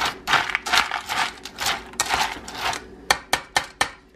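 Metal spoon stirring dry kibble and cottage cheese in a stainless steel bowl: a run of rattling, scraping strokes as the kibble is turned over. About three seconds in it changes to a quick series of sharp metal taps, about four a second.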